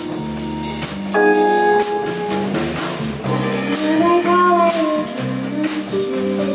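Live band music: electric bass, keyboard and drum kit with cymbal hits, joined by a woman singing from about halfway through.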